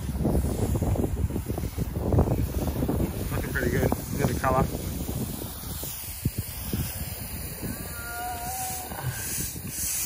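Wind buffeting the microphone over the hiss of garden hoses spraying water across a fresh exposed-aggregate concrete slab, washing the surface paste off to bare the stones. Short snatches of voice come through twice.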